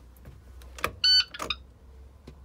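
A click, then a single short electronic beep from a school bus's dashboard lasting about a third of a second, followed by another click. A low steady hum runs underneath.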